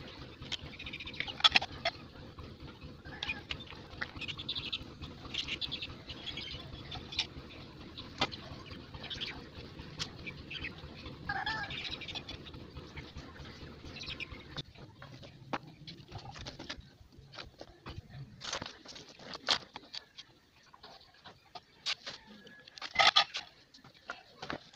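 Scattered bird calls, loudest about a second and a half in and near the end, over light clicks and knocks of plastic pipe fittings being handled. A low steady hum fades out a little past halfway.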